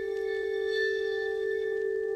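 Ambient background music: one long held ringing note with faint overtones, steady in pitch and level.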